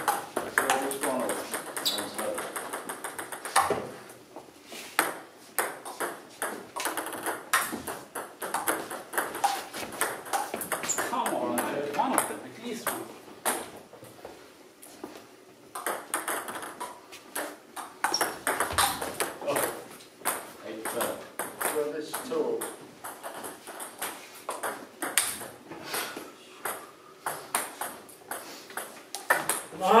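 Table tennis rallies: the ball clicking back and forth off the bats and the table in quick runs of hits, with pauses between points. Voices talk in the background.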